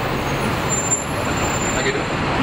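Steady road and traffic noise from a moving double-decker tour bus in city traffic, the bus's engine and tyres blending with surrounding street traffic.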